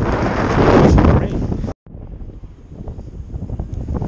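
Wind buffeting the camera's microphone, loud and low for the first couple of seconds, then cut off suddenly and followed by a much quieter hiss with a few faint ticks that slowly grows louder.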